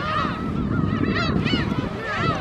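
A flock of gulls calling: many short calls overlap, each rising and falling in pitch, over a steady low rumble.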